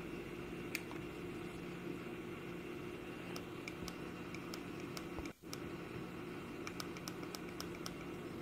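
Faint room tone with a low steady hum, and a scattering of small, light clicks, most of them in the second half, from the plastic buttons of a Philips Hue Dimmer Switch V2 being pressed.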